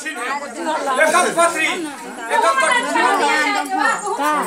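Several people talking over one another, in overlapping chatter.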